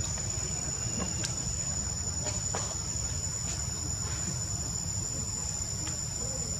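Steady high-pitched insect chorus, one unbroken tone, over a low background rumble, with a few faint clicks.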